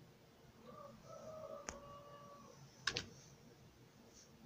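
Computer keyboard keys clicking faintly at the boot menu: a single click about halfway through, then a quick double click near the end, which is the loudest sound. A faint held tone sounds in the background in the middle.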